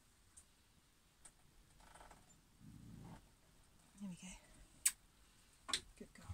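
Near-quiet room with a few faint, sharp clicks, the loudest about five seconds in, and a brief low vocal murmur around the middle.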